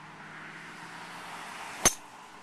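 Golf driver striking a ball off the tee: one sharp crack near the end. Under it, the steady noise of a car passing on the road behind.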